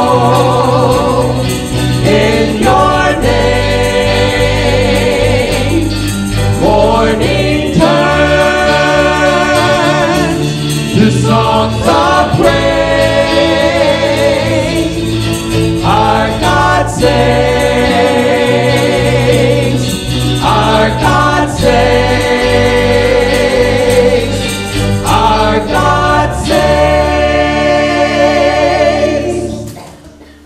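Church choir singing a contemporary worship song, backed by electric guitar, bass guitar and keyboard. The music ends just before the end.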